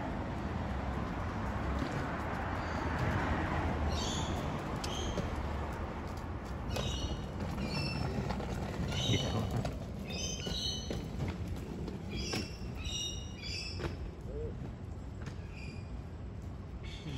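Small birds chirping in many short, repeated high calls from about four seconds in, over a rushing street noise that is loudest in the first few seconds.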